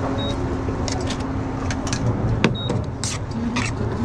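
Metal tongs clicking and scraping against stainless steel sauté pans in short, irregular knocks, the sharpest about two and a half seconds in. A steady low hum of kitchen equipment runs underneath.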